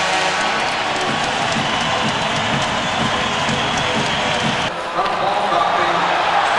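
Ice hockey arena crowd cheering and clapping for a home-team goal. The cheering cuts off abruptly near the end, giving way to quieter crowd noise.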